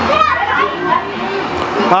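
Several adults and children talking over one another in casual group chatter.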